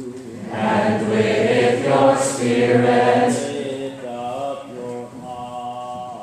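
A church choir singing, with a phrase that swells louder about half a second in and eases off after about three and a half seconds.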